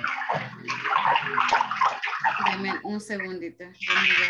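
Voices of several people on a video call, talking indistinctly over one another, over a steady rushing noise from open participant microphones.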